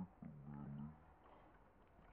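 A woman's low closed-mouth hum, a short 'mm-hmm', lasting under a second near the start, then faint background noise.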